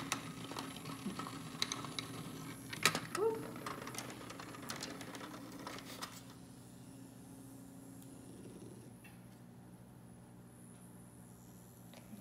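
HEXBUG Nano vibrating robot bugs buzzing steadily, their little vibration motors humming while they rattle and click against the plastic habitat walls. The clicking is busy for the first six seconds or so, then the sound thins to a quieter buzz.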